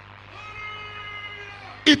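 A faint, drawn-out pitched tone, held for about a second and a half with a slight bend in pitch at its start and end. A man's voice breaks in loudly near the end.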